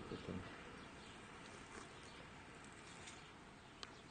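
Faint outdoor ambience, nearly silent, with a few faint short high-pitched clicks; the clearest comes near the end.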